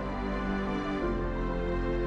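Background music of sustained, held chords; the chord changes about a second in.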